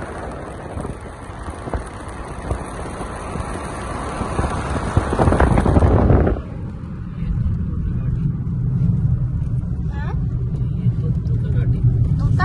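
Wind rushing past an open car window together with engine and tyre noise while the car drives along. About six seconds in, the sound changes abruptly: the hiss drops away, leaving a steady low rumble of the car as heard inside the cabin.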